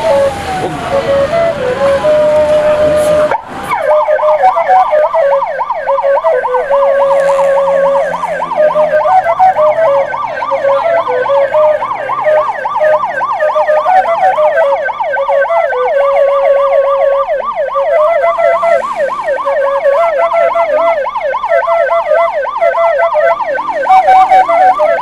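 Hearse's electronic siren sounding. A brief slower wailing tone gives way, at a sudden break about three seconds in, to a loud fast yelp that sweeps up and down several times a second.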